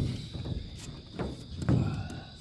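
A plastic spreader scraping body filler across patched holes in a bus's sheet-metal roof in a few short strokes, with a low thump near the end.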